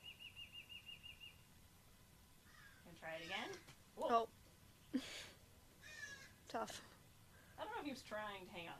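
A common marmoset's high, wavering trill lasting about a second and a half, fading out near the start. It is followed by a few short, wordless voice sounds, the loudest about four seconds in.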